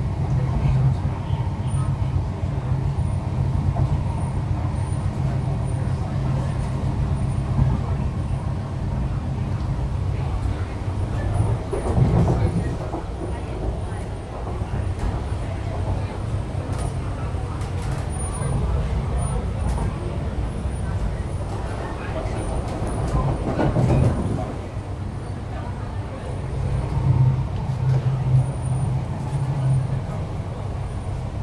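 An MTR East Rail Line R-Train electric train running along the line, heard from inside the car: a steady low rumble and hum, with two brief louder surges about 12 and 24 seconds in.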